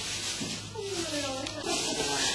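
Quiet, indistinct voices talking, over a low steady hum.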